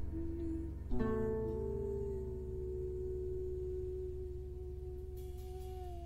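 Concert harp playing slowly: a chord plucked about a second in rings out and fades, over a held tone that sags slightly in pitch near the end.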